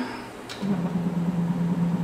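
NEMA 34, 1600 oz-in stepper motor starting up just after a click and running at steady speed, turning a 4th-axis spindle and 3-jaw chuck through a 20-to-44 tooth timing belt. It gives a steady low hum.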